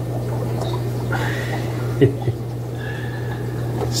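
Steady low hum of aquarium pumps with a fine crackle of bubbles rising through the tank water, and a couple of soft clicks about halfway through.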